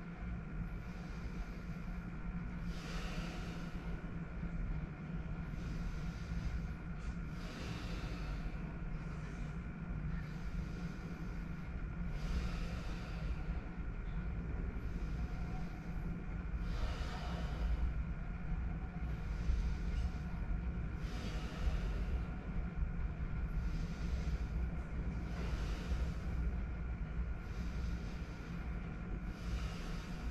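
Deep, rhythmic breathing in Wim Hof power-breathing style, a full breath about every one and a half seconds, each breath a rush of air. A steady low hum runs underneath.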